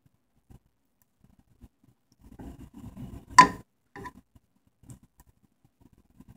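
Mostly quiet, then about two seconds in a faint scuffle of beef pieces being stirred in a nonstick frying pan, with one sharp knock of the utensil on the pan and a lighter one about half a second later.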